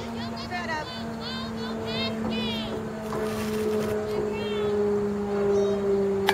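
A steady motor-like hum, several tones together, sinking slowly in pitch throughout, with distant high-pitched children's voices calling and cheering in short bursts, thickest in the first two and a half seconds.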